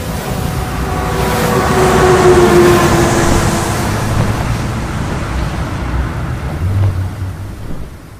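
Sound effects of an animated logo intro: a loud, deep rushing whoosh with a held, horn-like tone that sags slightly in pitch over the first few seconds, then a steady rush that fades out at the end.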